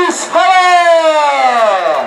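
A single voice calls out in a long drawn-out two-part shout. There is a short break just after the start, then a long held note that slides slowly down in pitch and ends near the end.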